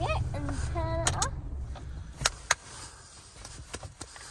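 Low engine rumble inside a pickup's cab as the truck comes to a stop in neutral. The rumble fades about halfway through, with brief voice sounds early on and a few sharp clicks later.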